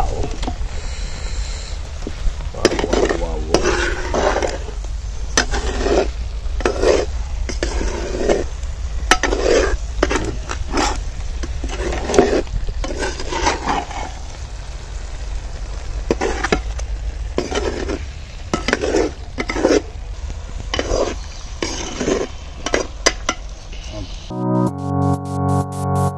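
A ladle stirring and scraping chicken pieces through thick masala in an earthenware pot, in uneven strokes about once a second with an occasional sharp click of the ladle on the pot, while the masala sizzles.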